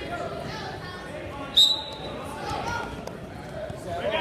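Voices and chatter around a wrestling mat, cut through about a second and a half in by one short, shrill blast of a referee's whistle.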